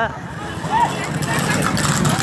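Motorcycle engine running at road speed with wind and road noise, a steady low rumble; a voice shouts briefly about a second in.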